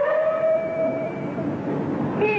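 A male Peking opera dan performer's falsetto voice holding one long high note, which swoops up at the start and fades out about a second and a half in.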